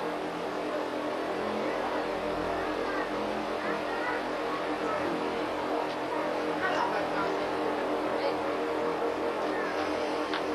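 Tour coach's engine idling steadily, with faint voices over it.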